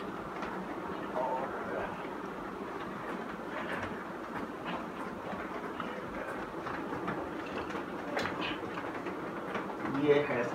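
Scattered clicks and light rattles of hands working at the plastic battery compartment of an instant gas water heater, prying it open to change the cell, over a steady background hiss.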